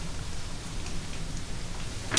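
Steady hiss of meeting-room tone picked up by the room's microphones, with no distinct events.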